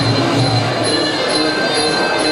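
Sarama, traditional Muay Thai ring music: the high, steady, reedy wail of the pi java oboe over drum beats.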